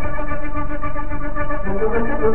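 A 1930s dance band playing, with violins and saxophones holding a chord over a steady beat. The chord changes shortly before the end.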